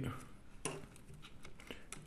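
Faint handling noise of electrical wires being pulled and moved by hand inside a 3D printer's controller compartment, with a couple of soft clicks, one about two-thirds of a second in and one near the end.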